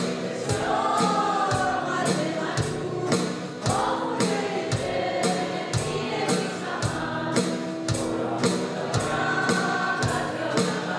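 Acoustic guitar strummed in a steady beat under voices singing a Persian-language Christian worship song together.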